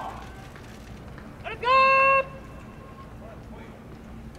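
One loud, drawn-out shout from a person's voice, held at a steady pitch for about half a second roughly a second and a half in, over a low steady background hum.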